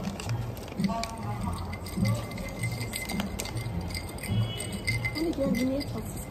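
Crinkling and rustling of a snack packet's wrapper as it is pulled open by hand, over background café music with a steady beat.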